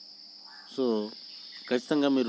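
A man talking: one short spoken word about a second in, then speech again near the end, over a steady high-pitched whine or hiss in the background.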